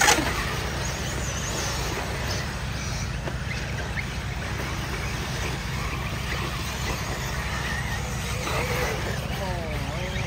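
Electric RC buggies racing on a dirt track: a faint whine of motors and drivetrains with tyre noise over a steady low rumble of wind on the microphone. A sharp knock comes right at the start.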